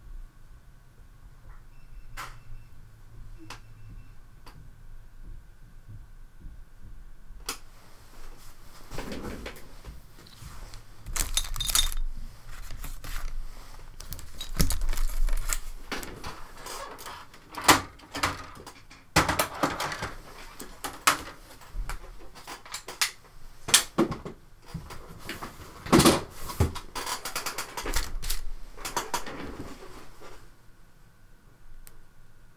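Irregular rustling, clicks and knocks of paper and a painting board being handled on a desk: a watercolor painting is lifted off and a fresh sheet of watercolor paper is laid down. The first few seconds hold only a faint hum and a few clicks; the handling begins about seven seconds in.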